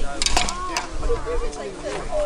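Several people talking among themselves, with a quick run of four sharp clicks or clinks in the first second.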